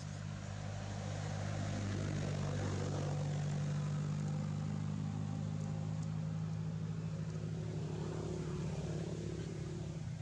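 A vehicle engine running with a steady low hum, growing louder over the first few seconds and then easing slightly.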